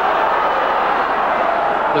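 Football stadium crowd heard through the TV broadcast: a steady din of many voices from the terraces.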